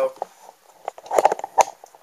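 Camera handling noise: a cluster of short clicks and knocks about a second in as the camera is set back onto its tripod.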